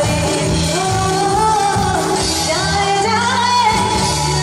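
A woman singing a held, gliding melody into a microphone, amplified, backed by a live band of drum kit, keyboard and electric guitar.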